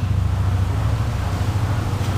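Steady low hum with a faint even hiss, the background noise of the room.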